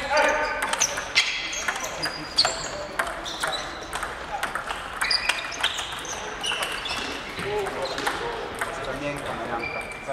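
Table tennis balls clicking off bats and bouncing on tables during rallies, at this table and the neighbouring ones. The clicks come irregularly and fast, several a second.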